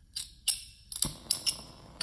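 Several sharp clicks from a flint striker as a Bunsen burner is lit. About a second in, a faint steady hiss of the gas flame begins.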